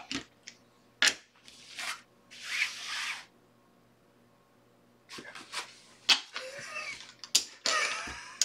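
Playing cards being swept up off a felt blackjack table, then clay casino chips clicking as bets are paid out. A few sharp clicks and a soft swish come first, then about two seconds of near quiet, then a quick run of clicks near the end.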